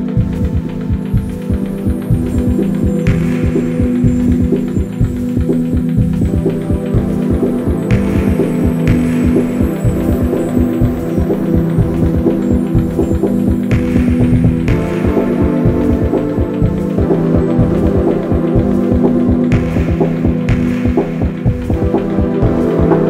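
Ambient IDM electronic music: a held synth chord over a fast, even pulsing bass, with brighter swells rising and fading about every five seconds.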